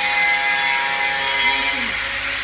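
Adhesive labeling machine running: a steady mechanical whir with several steady hums through it, dropping slightly in level near the end.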